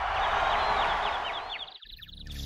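Intro sound design for an animated title: a swell of rushing noise that fades out near the end, over a quick run of short, repeated high chirps.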